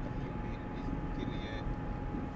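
Steady road and engine noise of a car driving at cruising speed, heard from inside the cabin, with a thin steady whine running under it.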